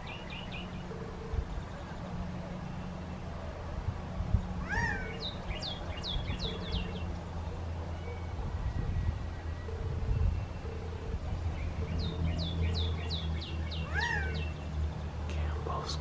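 A male Gambel's quail gives its loud single-note call twice, about five seconds in and again near the end, each note arching up and down in pitch. Runs of high, quick falling chirps come around the calls, over a steady low hum.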